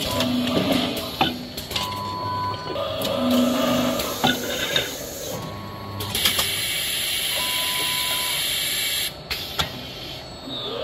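CIMEC AML can filling monoblock running: a steady mechanical clatter with repeated sharp clicks and knocks and a few short steady hums. A loud hiss sets in about six seconds in and cuts off about three seconds later.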